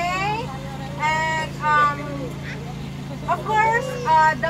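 A woman's voice through a handheld megaphone, speaking in short phrases, over a steady low hum.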